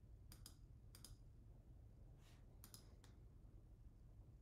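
Faint clicks at a computer over near-silent room tone: two quick pairs in the first second or so, then a cluster of three near the end.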